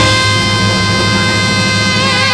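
Swing band holding one long sustained note at the close of a song, steady in pitch over a regular low pulse.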